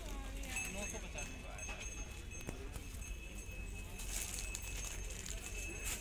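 Indistinct talking of several people at a busy market stall, over a steady low hum and a faint high steady tone.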